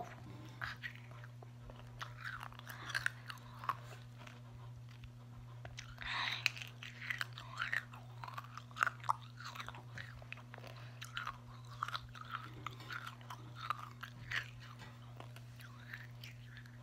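Close-miked mouth sounds of a candy cane being sucked and chewed: scattered wet clicks and smacks over a steady low hum.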